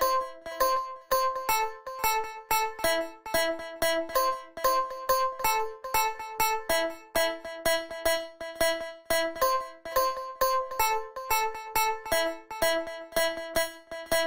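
Electronic music made in GarageBand: a keyboard with an electric-piano tone plays a looping melody of short, evenly spaced notes, about two a second.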